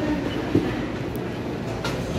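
Vending machine's internal delivery mechanism running with a steady rumble while it brings the order to the pickup hatch, with a single knock about half a second in.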